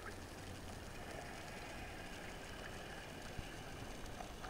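Steady underwater noise picked up by a camera in its waterproof housing: a low rumble with hiss over it, and one sharp click about three and a half seconds in.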